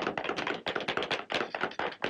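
Several shoemakers' hammers tapping on shoes, quickly and unevenly and overlapping, as in a busy cobblers' workshop.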